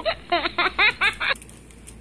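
A burst of laughter: about six quick, pitched ha-like pulses that stop about a second and a half in.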